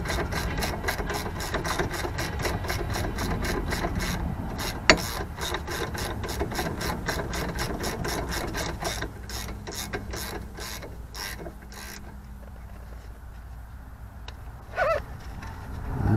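Hand ratchet wrench clicking as it is worked back and forth on a rear suspension bolt under a Dodge Challenger, a rapid, even run of clicks with one louder click about a third of the way in. The clicking thins out and stops about three-quarters of the way through.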